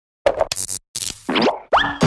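Cartoon sound effects for an animated title logo: a quick string of pops and clicks, then two rising boing-like glides, the second ending on a held bright tone.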